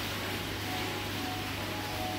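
Steady low hum with an even hiss from running machinery, such as aquarium pumps or room ventilation, with no sudden events.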